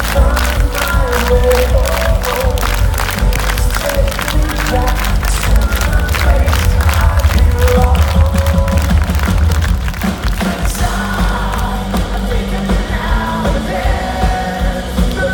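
Rap-rock band playing live through a concert PA, heard loud from inside the crowd: a fast, driving drum beat under vocals, with crowd noise. About ten seconds in the drum beat drops out and the music turns to a more sustained passage.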